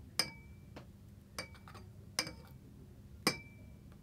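Glass beaker clinking as the water in it is stirred: about five sharp clinks, each with a brief ring, the loudest three spread a second or so apart.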